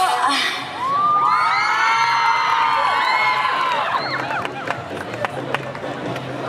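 Dance music cuts off and a student crowd cheers and screams, many high voices overlapping for about three seconds before the cheer dies down to a lower crowd noise.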